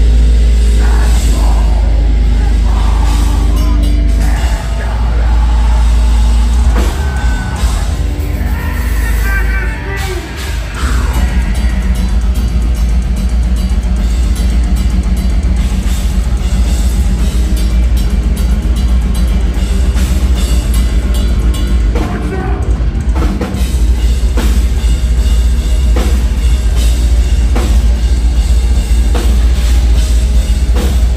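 Deathcore band playing live at full volume: distorted guitars, heavy bass and drum kit, with harsh vocals over the top. There is a short break in the heavy low end about ten seconds in before the full band crashes back in.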